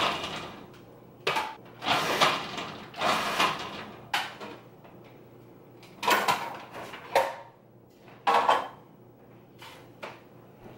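Plastic parts of a food processor being handled and taken apart: a series of short clunks, scrapes and rattles, about seven separate bursts with pauses between.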